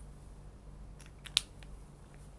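A few small plastic clicks over a faint steady room hum, the sharpest about a second and a half in, from a marker pen being handled and uncapped.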